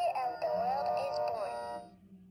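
A toy nativity advent calendar playing its Christmas song, a voice singing a wavering melody over music. The song ends near the end.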